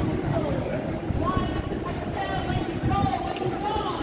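Busy city street: passersby talking close by over steady traffic noise.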